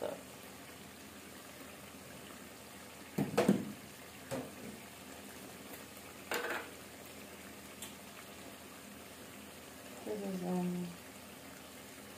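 A pan of tomato-pepper stew simmering with a steady low bubbling hiss. A metal spoon knocks sharply a few times as seasoning powder is spooned into it, loudest about three seconds in, with smaller knocks about a second and three seconds later.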